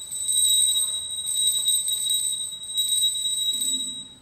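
Altar bells ringing three times, each ringing a high, sustained jingle that swells and fades. They mark the elevation of the consecrated host.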